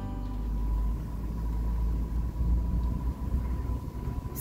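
Low, steady rumble of a car driving slowly, heard from inside the cabin, with a faint constant high tone over it.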